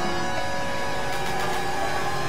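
Dense experimental electronic drone: several layers of music sound at once as many sustained tones over a noisy wash, at a steady level with no clear beat.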